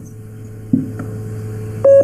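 Open telephone/VoIP call line with a steady low hum and line noise, which grows louder as the line opens. Near the end comes a short electronic beep on the line.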